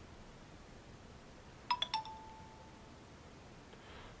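A short electronic chime from a smartphone's speaker about two seconds in: a couple of quick high blips, then a slightly lower tone that fades out within about half a second, against faint room tone.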